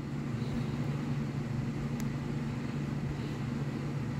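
A steady low mechanical hum, with one faint click about halfway through.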